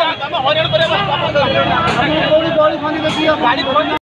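Several people talking over one another, with road traffic running behind them.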